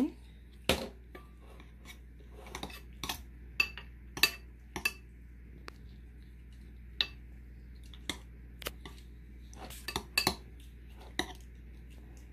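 Metal spoon knocking and scraping against a glazed ceramic bowl while stirring soft fresh butter, in irregular clicks scattered through the whole stretch.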